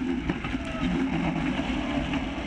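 Onboard sound of a Caterham Seven 420R racing car at speed: its engine running steadily under heavy wind rush on the open-cockpit camera.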